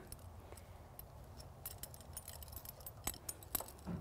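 Faint metallic clinks and ticks of horse bits and their chains being handled on a wall rack, with two sharper clinks about three seconds in, over a low steady hum.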